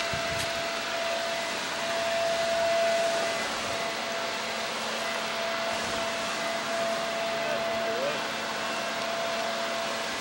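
Steady background hiss with a faint, steady high hum running through it, and no distinct events.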